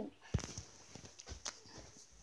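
Phone handling noise: a few uneven knocks and taps as the recording phone is picked up and fumbled, the loudest about a third of a second in.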